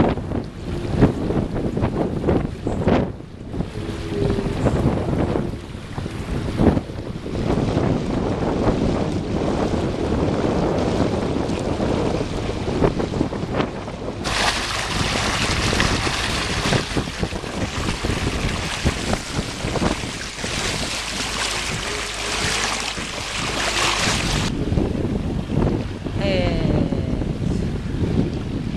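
Wind buffeting the microphone over water rushing past a sailboat's hull. Midway through, a brighter, harsher hiss runs for about ten seconds.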